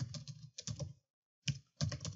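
Typing on a computer keyboard: a quick run of keystrokes, a short pause about a second in, then more keys.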